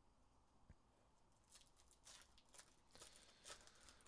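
Near silence with faint crinkling and tearing of a foil trading-card pack wrapper being opened, in scattered crackles from about a second and a half in.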